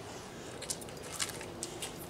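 Pit bull eating french fries off concrete, a few faint short clicks and crunches of chewing and licking scattered through the moment.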